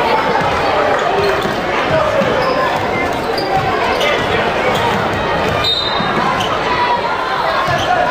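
Basketball game sound in a large gym: a ball bouncing on the hardwood court over the steady chatter and calls of the crowd and players.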